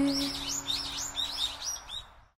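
A bird chirping in a quick run of short rising-and-falling notes, about three or four a second, over the last fading chord of a song.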